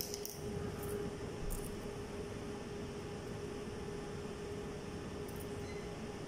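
Steady room hum from ventilation or air conditioning, with a few faint light clicks as long thin metal laparoscopic instruments are handled over a plastic tray.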